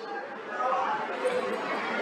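Indistinct background chatter of other people talking, with no clear close voice.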